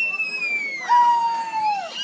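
Riders' long, high-pitched held screams, several voices overlapping, each trailing off with a falling pitch; a lower held 'woo' comes in about a second in and falls away near the end.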